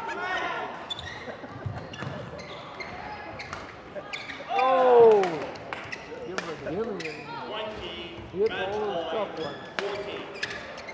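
A doubles badminton rally: rackets hitting the shuttlecock in sharp clicks and shoes squeaking on the court floor. The loudest sound is a drawn-out falling pitched sound about halfway through, with more short arching squeaks near the end.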